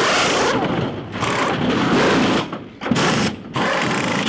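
Pneumatic wheel gun (impact wrench) spinning a race car's centre-lock wheel nut during a pit stop. It rattles loudly in three bursts with short gaps between them.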